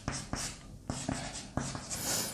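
Chalk on a blackboard: a quick run of short taps and scrapes as short strokes are drawn.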